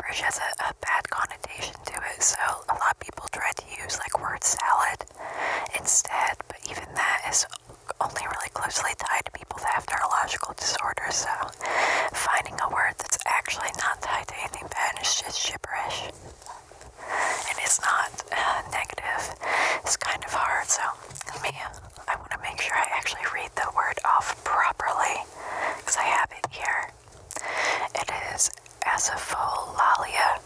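A woman whispering close into a microphone, deliberately unintelligible: a steady run of breathy, hissing syllables with no clear words and only brief pauses.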